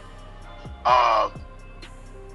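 Background music with steady low tones, and one short, harsh, caw-like call lasting about half a second, about a second in.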